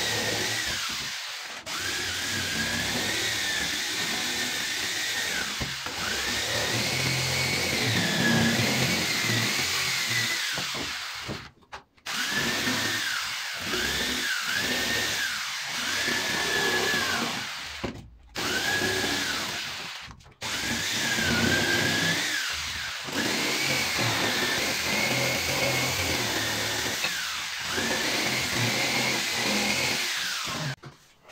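Handheld electric jigsaw cutting a curved shape out of a wooden board: a steady motor whine with the blade's rasp, its pitch rising and falling through the cut. The saw stops briefly three times, in the middle of the stretch.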